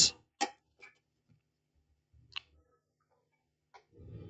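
A few isolated sharp clicks, about a second or more apart, from circuit boards and test probes being handled on the repair bench, with quiet between them.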